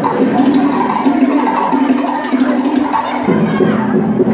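A crowd of schoolchildren cheering and shouting over tamouré dance music.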